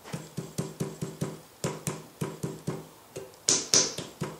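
Quick light tapping, about five taps a second, each with a short ringing tone. Two louder, sharper taps come near the end.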